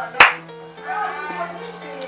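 A single sharp hand clap just after the start, the clap that commands the clap-controlled curtain to close. Background music with steady held notes follows it.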